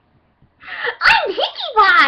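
A woman giggling in short, breathy, high-pitched bursts, starting about half a second in after a brief silence.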